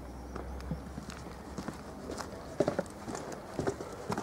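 Footsteps on stone paving: irregular hard clicks, with a few louder steps in the second half.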